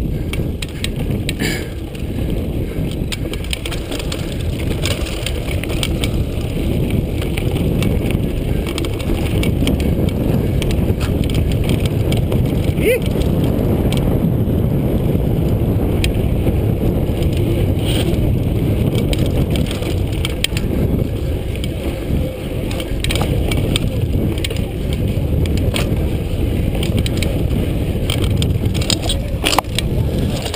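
Mountain bike ridden fast over a rough dirt singletrack: a loud, steady rumble of wind and tyres on dirt, broken by frequent short rattles and knocks from the bike over the bumps.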